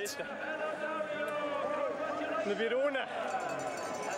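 Indistinct background voices talking, quieter than the commentary on either side.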